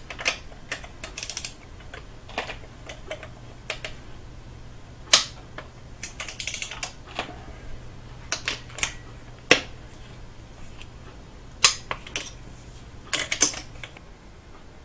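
Torque wrench clicking as the intake manifold bolts of a Subaru EJ253 flat-four are tightened to spec: short runs of ratchet clicks and sharp single clicks, spaced unevenly. A steady low hum runs underneath.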